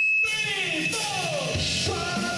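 Live metal band starting up loudly: a steady high-pitched whine cuts off a quarter second in as guitars come in, sliding down in pitch, and the drums and bass come in heavily about one and a half seconds in.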